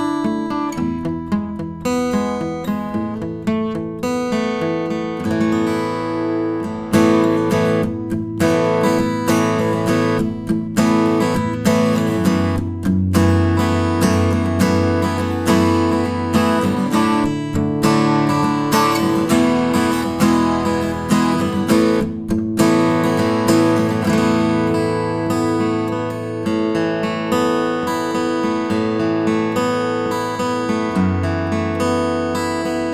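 Epiphone J-200 all-solid jumbo acoustic guitar played solo, a continuous flow of picked notes and strummed chords.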